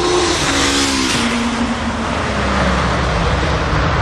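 Car on the road: steady road and engine noise, with an engine note that falls in pitch over the first two seconds.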